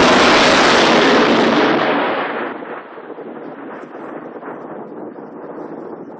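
Thunderclap from a close lightning strike: a sudden, very loud crack that stays loud for about two seconds, then dies down over the next half second to a lower, steady rumble.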